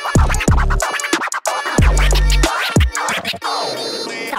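Hip-hop beat with DJ turntable scratching over deep bass and drums; the bass cuts out about two and a half seconds in.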